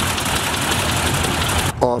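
1943 Boeing Stearman biplane's radial engine running with the propeller turning, a loud steady drone with a fast even pulse. It cuts off shortly before the end.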